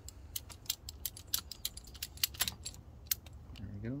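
Irregular sharp metallic clicks and clinks from the stock positive battery terminal clamp and its cable ends being handled and worked loose.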